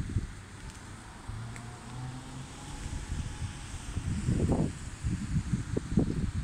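Wind buffeting a phone microphone outdoors: uneven low rumbling gusts that grow stronger from about two-thirds of the way through.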